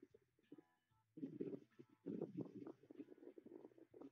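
Faint, muffled voice on a recorded phone call, too low for any words to be made out. A few faint steady tones come briefly about half a second in.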